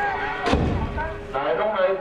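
A single loud boom about half a second in, with a low rumbling decay, over steady ringing tones and voices.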